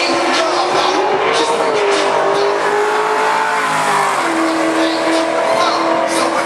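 Race car engine running hard, its note rising over the first two seconds, dropping about four seconds in and then holding steady.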